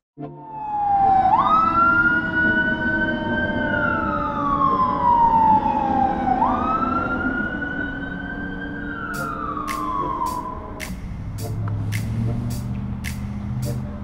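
Police car siren wailing in two slow cycles, each a quick rise in pitch, a short hold, then a long fall. Near the end the siren stops and a low steady hum with light ticks about twice a second takes over.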